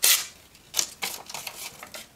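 Vosteed Raccoon folding knife slicing through a sheet of printer paper in one quick cut right at the start, followed by a few softer paper rustles as the sheet is handled.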